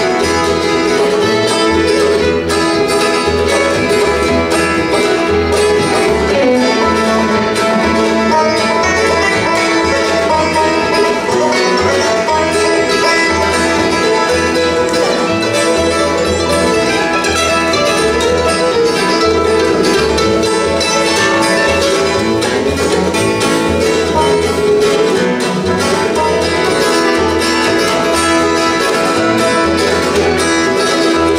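Live acoustic bluegrass band playing an instrumental: banjo, mandolin, acoustic guitar and fiddle over an upright bass keeping a steady beat.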